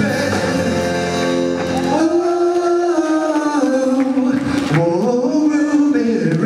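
Male singer performing live with a band, in full voice. About two seconds in the low backing drops away, leaving long held sung notes that slide in pitch.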